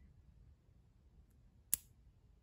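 Quiet room tone with one short, sharp pop about three-quarters of the way through.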